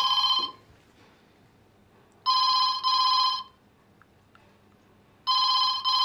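Telephone ringing with a UK-style double ring, 'ring-ring', three times: one pair ending about half a second in, another about two seconds in, and a third starting near the end.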